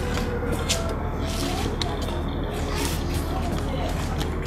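Outdoor location sound: a steady low hum under a hiss, with scattered short clicks and faint indistinct voices in the background.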